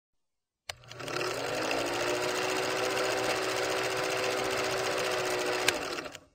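Film projector sound effect: a click just under a second in, then a steady rapid mechanical clatter with a running hum that rises briefly as it gets going. A second sharp click comes near the end.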